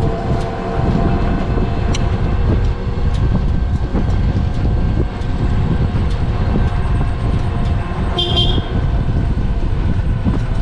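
Steady low rumble of a slowly moving open-sided vehicle heard from on board, with rattles and wind on the microphone, and a short horn toot about eight seconds in.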